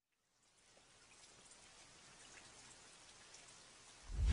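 Faint rain-like patter and hiss fading in from silence about half a second in, then holding steady at a very low level.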